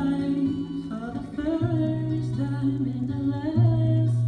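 A solo singer holds a wavering, wordless vocal line over sustained accompaniment chords in a live acoustic pop ballad.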